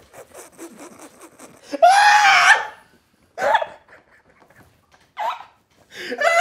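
Two men laughing hard. For about the first two seconds there are quiet, breathy pulses of laughter, then a loud, high-pitched shriek of laughter, followed by two shorter outbursts.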